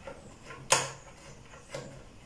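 Two sharp metallic clicks about a second apart, the first louder, as a screw on the table's cable is turned by hand into a nut set in the wooden table top.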